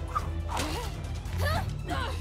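Soundtrack music from an animated fight scene, with two short cries that swoop up and down in pitch, one about half a second in and one about a second and a half in.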